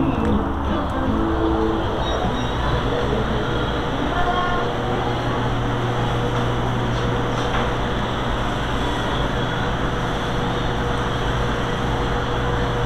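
Steady hum and air noise of commercial cooling equipment, with a low steady tone coming in about four to five seconds in.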